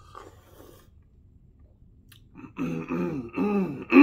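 A man takes a faint sip of coffee. About two and a half seconds in he makes three wordless voiced sounds whose pitch rises and falls, the last the loudest and falling away: his reaction to the strong, bitter taste of a dark espresso-roast coffee.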